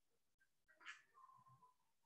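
Near silence: faint room tone over an online class connection, with one brief faint sound about a second in.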